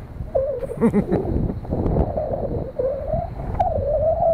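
Low rumble of wind on the microphone high up an open lattice radio tower, with a wavering whistle-like tone that comes and goes. A short laugh comes about two seconds in.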